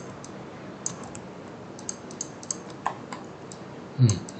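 Scattered, irregular clicks of a computer keyboard and mouse, about a dozen sharp taps over a steady faint background hiss, as keys such as Shift and Alt and the left mouse button are pressed.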